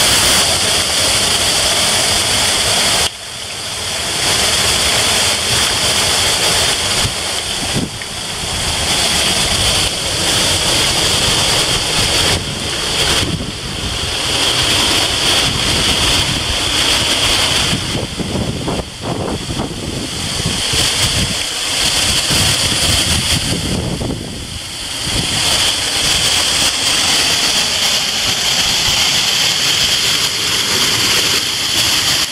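Loud, steady rushing of waterfalls and a stream swollen by heavy autumn rain. The sound changes abruptly several times as the water source changes.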